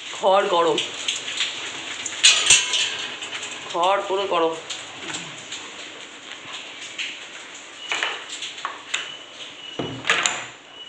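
A high, wavering voice-like call heard twice, near the start and again about four seconds in, among scattered clicks and knocks.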